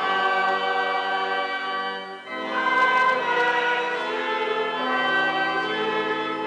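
Choral music: a choir singing slow, sustained chords, with a short break between phrases about two seconds in.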